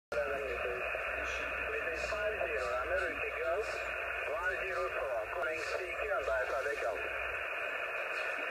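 Icom IC-706MKIIG HF transceiver receiving single-sideband on the 11-metre band: a weak, warbling voice comes through steady static hiss from the radio's speaker, with the thin, narrow sound of SSB receive audio.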